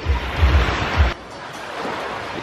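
Wind buffeting the microphone over the wash of surf on a beach, with heavy gusts for about the first second, then dropping off suddenly to a quieter steady wash.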